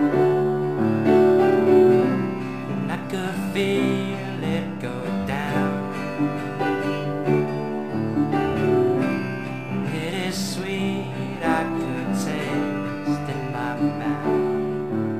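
Instrumental passage of a song played on a nylon-string classical guitar, plucked and strummed, within a band arrangement.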